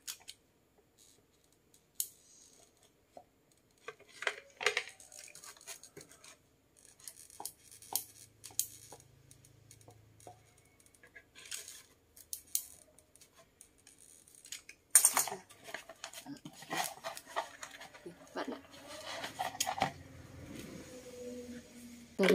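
Handling noise from a hot glue gun being worked around the joint of a plastic bouquet holder and a foam disc: scattered clicks, taps and scrapes of plastic and foam. The loudest burst comes about fifteen seconds in.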